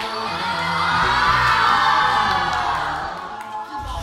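A crowd of teenagers shrieking and cheering together. It swells to a peak and dies away after about three seconds, over background music.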